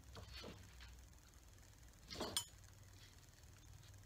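Faint handling sounds of items being taken from a cardboard box, with one brief clink a little over two seconds in.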